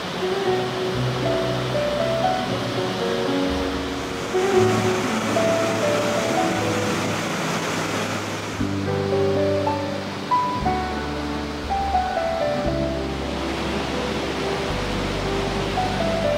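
Background music with sustained, slowly changing notes, over the steady rush of water pouring through a weir spillway and churning below it.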